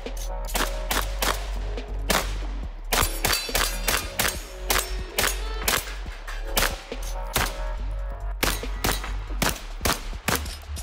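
AR-style semi-automatic rifle firing a long series of shots in quick strings, often two or three within half a second, with short pauses between strings. Background music plays underneath.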